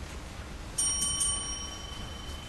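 A small metal bell, struck three times in quick succession a little under a second in, its clear ringing tone dying away over about a second.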